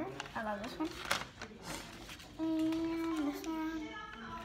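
A young girl's voice making short wordless sounds, then holding one steady sung or hummed note for about a second and a half in the second half. A brief crackle of the paper in her hands comes about a second in.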